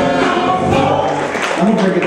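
Live soul music: several singers singing together over a band.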